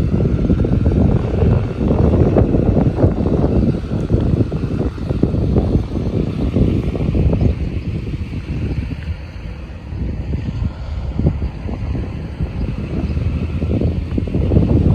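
Wind buffeting the microphone of a handheld phone: a loud, uneven low rumble that eases somewhat in the second half.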